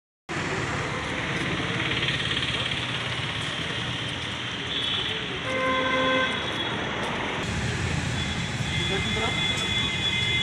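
Street ambience of road traffic and indistinct voices, with a vehicle horn sounding once for most of a second about halfway through.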